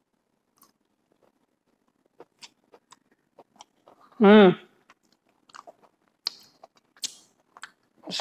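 A person chewing crispy fried okra, a scatter of small sharp crunches over several seconds, with a brief vocal sound partway through.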